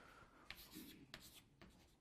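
Faint scratchy strokes of writing, a few short ones in quick succession, over quiet room tone.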